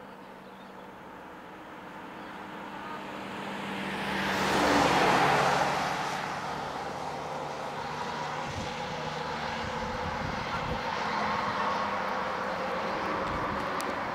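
A road vehicle approaching and passing close by on the highway. Its tyre and engine noise rises to a peak about five seconds in and drops in pitch as it goes by, then steady road noise continues, with a few low thumps later on.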